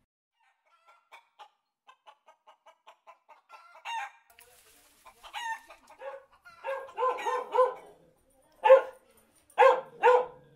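A chicken clucking: a run of soft, quick clucks starting about a second in that grow louder, then several loud drawn-out calls from about six seconds in, the loudest near the end.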